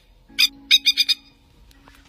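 Plover calling: three quick bursts of rapid, high-pitched notes in the first second or so, then a pause.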